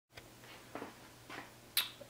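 Faint room tone with a few soft taps, then one sharp click near the end.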